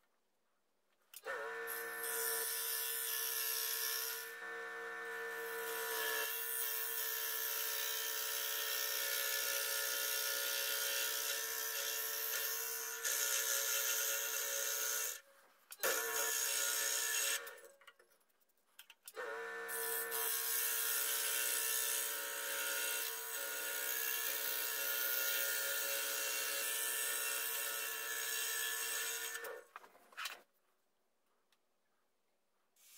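Scroll saw running, its reciprocating blade cutting a laminated-wood knife-handle blank. It starts about a second in and stops twice near the middle, once briefly and once for a couple of seconds, before running again until just before the end.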